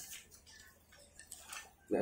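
A quiet lull during a shared meal, with a few faint light clicks of tableware such as chopsticks or small cups on the tray. A man's voice comes back in at the end.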